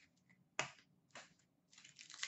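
Trading cards being handled: two short, sharp clicks of card stock against card, the louder about half a second in and a softer one about half a second later, then a rustle of cards sliding begins near the end.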